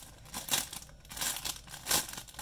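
Clear plastic bag crinkling in irregular bursts as hands turn a bagged plastic model hull part inside it, loudest about half a second in and again near the end.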